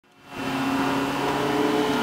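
A car engine running steadily with an even, low-pitched hum, fading in over the first half second.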